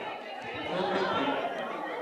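Indistinct background chatter of many guests talking at once in a hall.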